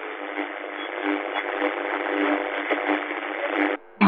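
Radio static between stations: a steady, thin hiss confined to a narrow midrange band, as from a small radio speaker while the dial is turned. It cuts off suddenly near the end.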